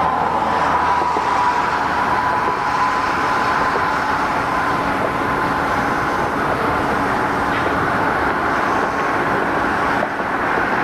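Steady noise of road traffic passing, with a thin high whine near the start that fades out over the first few seconds.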